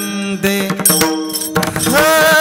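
Kirtan devotional music: steady held notes with drum strokes through them, and a pitch sliding up into a long held note near the end.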